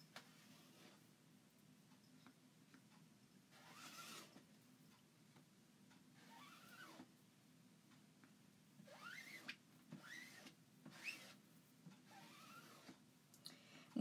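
Faint scrapes of a hand squeegee dragged across a paste-covered silk screen, about six separate strokes with a slight rising squeak, most of them in the second half.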